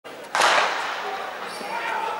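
A starting gun fires once, a sharp crack about a third of a second in, followed by a trailing echo. It is the start signal that sends the sprinters out of their blocks.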